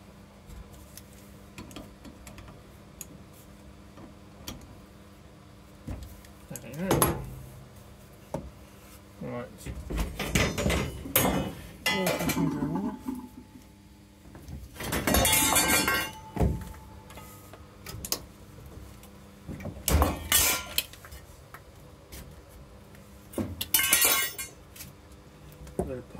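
Intermittent metallic clinks and knocks from hand work on copper pipe and brass valve fittings, with two brief hissing bursts: one midway and one near the end.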